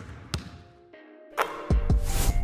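A basketball bouncing, a couple of sharp bounces about half a second apart, as part of an intro sound effect. About a second and a half in, a rising swell leads into a deep bass hit that drops in pitch, and music starts.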